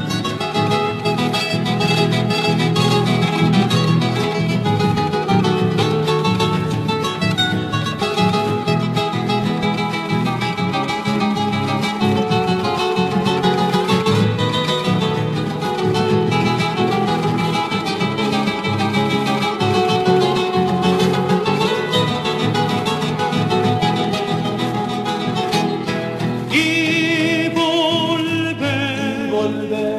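Instrumental passage of Argentine folk music from La Rioja, carried by plucked and strummed acoustic guitars. Near the end a high voice with strong vibrato comes in.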